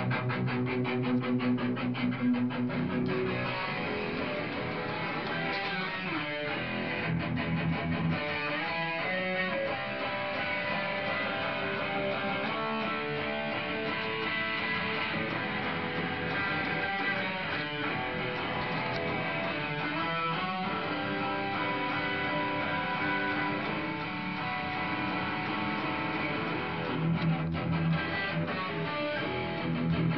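Electric guitar played through overdrive distortion while its tone is being dialled in: sustained, dense chords and riffs that change every few seconds.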